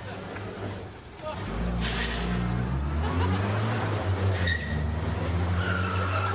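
A vehicle engine starts up about a second and a half in and keeps running with small shifts in pitch.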